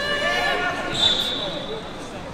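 Voices calling and talking in a large sports hall during a wrestling tournament. About a second in, a single high, steady whistle blast lasts nearly a second.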